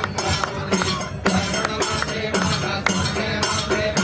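Devotional aarti music with a steady beat of metallic clinks, about two or three a second.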